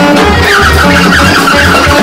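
Live improvised jazz from baritone saxophone, alto saxophone and drum kit, played loud. A low pulsing figure runs underneath, and from about half a second in a saxophone plays a high, wavering, squealing line.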